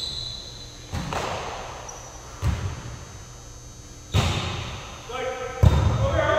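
A volleyball being struck by hands and forearms during a rally: four sharp hits about a second and a half apart, each echoing in a large gym hall, the last one the loudest. A player shouts near the end.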